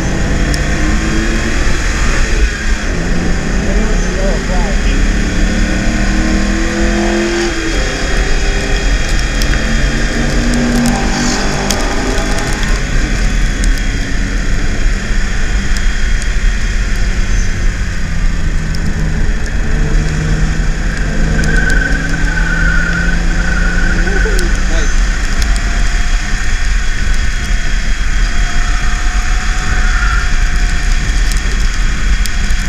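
BMW E36 328is straight-six engine heard from inside the cabin, pulling hard through the gears. Its pitch climbs, drops at each upshift and climbs again, then holds steadier as the car settles and slows. A steady low road rumble runs underneath.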